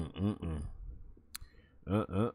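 A man chuckling in short voiced bursts at the start and again near the end, with a single sharp click about a second and a half in.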